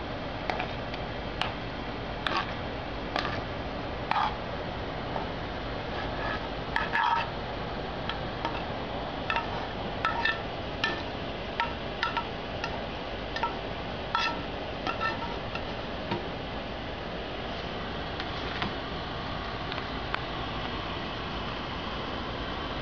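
A metal utensil knocking, clinking and scraping against cookware as cooked food is scooped into a foil tray, in irregular short clinks roughly once a second over a steady hiss.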